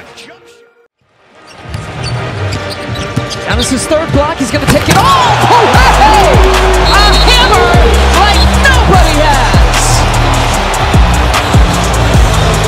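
Basketball game sound: sneakers squeaking on the hardwood court and the ball bouncing, amid arena noise, after a brief drop to near silence about a second in. Background music with a heavy bass beat comes in about six seconds in.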